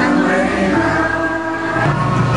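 Choral singing over music, in long held notes that move to a new chord twice.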